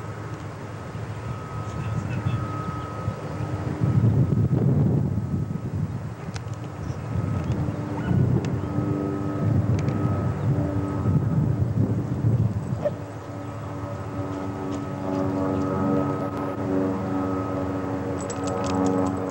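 Wind gusting on the microphone in low rumbling surges, twice, with a steady droning engine hum underneath that grows more prominent in the last few seconds.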